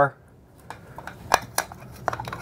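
Plastic clicks and taps from a small security camera's snap-on back cover being handled and fitted onto its housing, with a few sharp clicks about a second in.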